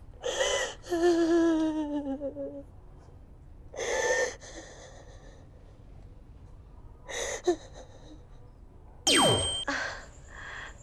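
A woman crying: sobbing gasps and a drawn-out wailing cry that falls in pitch, then more sobbing breaths. Near the end a loud sweep falls steeply in pitch.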